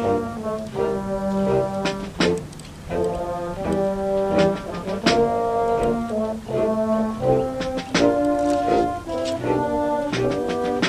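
School concert band playing held brass and woodwind chords that shift every second or so, with a percussion strike about every three seconds.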